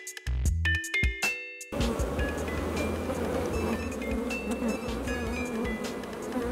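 Light chime-like music, then about two seconds in the steady, dense buzzing of many honeybees at an open hive comes in, with faint notes of the music still over it.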